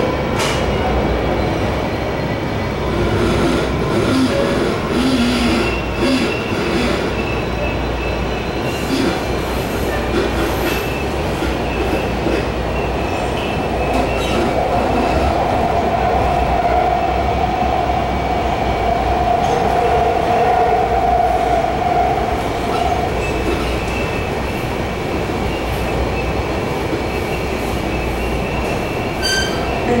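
Inside a MARTA rapid-transit rail car running along the track: a steady rumble of wheels and car body, with a few faint clicks. A held, mid-pitched tone rises over it for several seconds in the middle.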